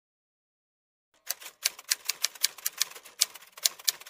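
Typewriter keystroke sound effect: a quick, irregular run of sharp key clicks, about five or six a second, starting about a second in.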